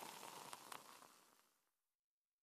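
Near silence: a faint hiss fading out to complete silence about a second and a half in.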